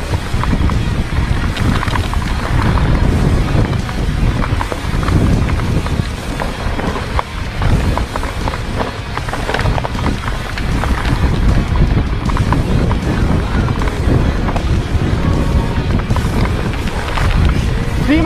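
Wind buffeting the microphone of a chest-mounted camera, with the rattle and knocks of a mountain bike riding downhill over rough dirt singletrack. The rumble is loud and continuous, with many small knocks scattered through it.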